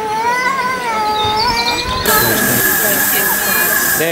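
A child's high, drawn-out voice, then, about halfway through, a sudden steady hiss of steam from a miniature steam locomotive that carries on to the end.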